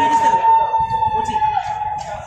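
Referee's whistle blown in one long, steady blast that ends about one and a half seconds in, over crowd chatter.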